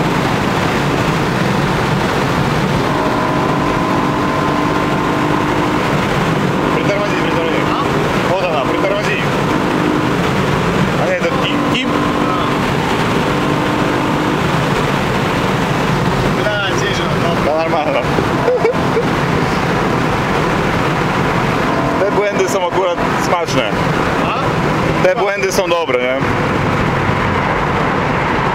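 Inside the cabin of a BMW M3 on the move: the V8 engine and tyre and road noise run steadily at a constant level.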